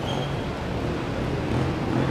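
Steady city traffic noise, a low continuous rumble of engines.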